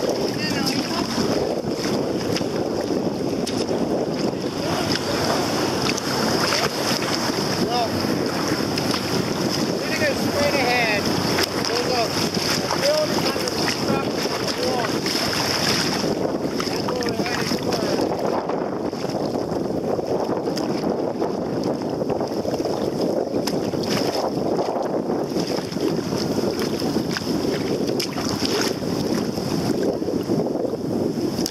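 Choppy water sloshing and slapping against a kayak's hull, with wind buffeting the microphone, a steady rushing noise throughout.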